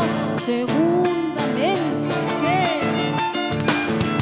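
Live Argentine folk band playing: a violin with sliding notes over guitar and drums, with a steady beat.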